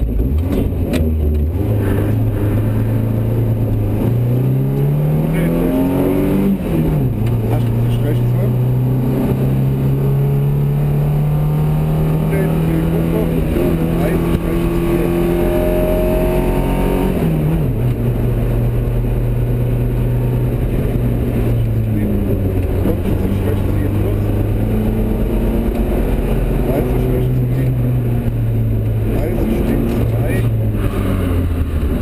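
Volvo 244 GLT rally car's engine heard from inside the cabin, pulling away from a stage start and accelerating hard. The pitch climbs through the gears with sharp drops at the shifts, about six and seventeen seconds in, then the engine runs at a steadier, lower pitch with brief lifts of the throttle.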